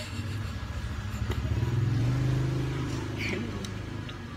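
A motor vehicle's engine running past, a low hum that swells to its loudest about halfway through and then fades.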